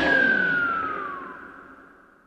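The final ringing note of a 2000s garage-rock song after the band cuts off: a single high tone sliding steadily down in pitch as it fades away to silence.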